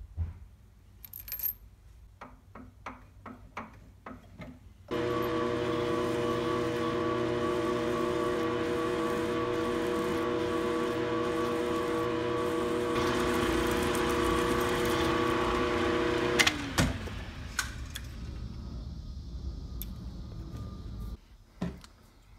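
Light metallic clicks and clinks, then about five seconds in a small milling machine starts and runs steadily with a humming whine. An end mill cuts into an aluminium adapter to recess its screw holes, adding a hiss in the latter part. About sixteen seconds in the mill is switched off and its spindle winds down with a falling pitch.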